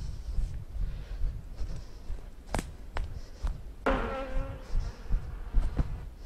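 Wind buffeting the microphone and footsteps on a leaf-littered woodland path. A few sharp clicks come between two and three and a half seconds in, and a brief pitched sound fades out about four seconds in.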